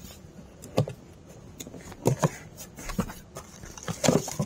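Cardboard boxes being handled and opened: scattered light taps, scrapes and rustles of packaging, a few each second.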